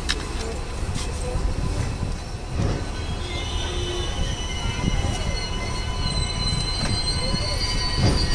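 Passenger train coaches rolling slowly over the track with a low rumble; from about three seconds in, a high steady wheel squeal joins in and holds to the end.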